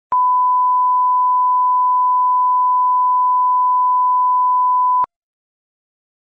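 A steady 1 kHz test tone, the line-up reference tone laid at the head of a video, held for about five seconds and cut off abruptly with a click.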